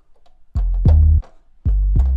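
808 bass sample played from a keyboard through Logic's EXS24 sampler: two deep bass notes, the first about half a second in and the second near the end, each opening with a sharp click and holding a steady pitch.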